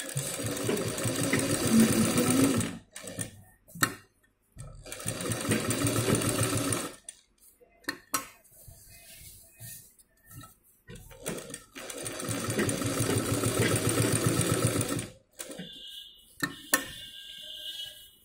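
Sewing machine stitching quilting lines in three runs of a few seconds each, stopping in between while the fabric is turned, with small clicks in the pauses. A faint steady high tone is heard near the end.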